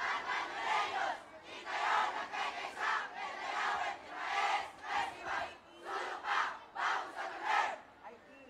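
Many voices shouting together in unison: a chant of short, loud group shouts, about two a second, with brief gaps between them.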